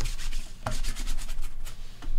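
Stack of foil trading cards being thumbed and slid against one another in the hand, a rapid run of short, dry scraping strokes.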